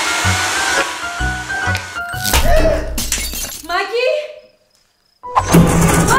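A hand-held hair dryer blows with a steady hiss over background music with a beat. About two seconds in, a sudden loud noisy burst cuts in, followed by sweeping pitched effects. The sound then cuts to silence for about a second before music returns near the end.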